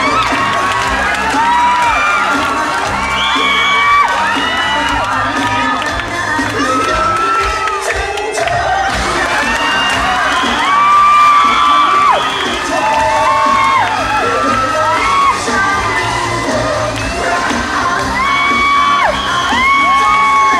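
A played-back song with long, held sung notes that swoop up into each note and fall away at the end, under a crowd cheering and shouting.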